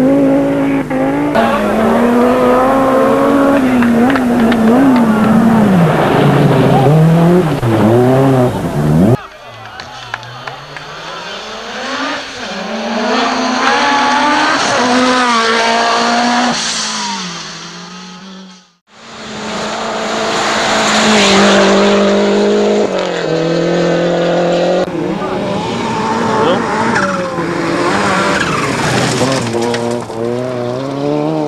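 Rally cars driven flat out on gravel stages, engines revving up and falling back through gear changes. There are several separate passes, with a sudden change in the sound about nine seconds in and a brief dropout about two-thirds of the way through.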